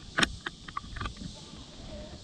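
A handful of sharp clicks and knocks from fishing rod and reel handling in a plastic kayak, the loudest about a quarter second in, the rest spread over the next second, over a steady high hiss.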